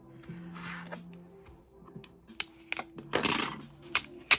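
Planner paper and stickers being handled: a soft rustle early on, a few sharp light taps, then a brief louder rustle of paper about three seconds in. Faint steady background music underneath.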